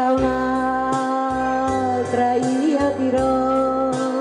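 Karaoke backing track of a slow Italian ballad, with a low bass line pulsing about twice a second under long held melody notes, and a woman singing along into a microphone.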